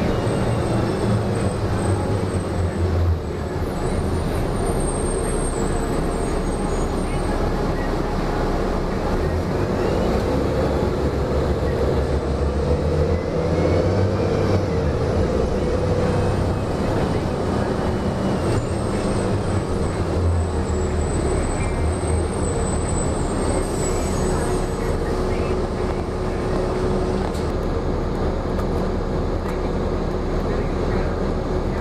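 Inside a moving 2004 Gillig Low Floor transit bus: steady engine and road rumble. A whine swells and fades again around the middle.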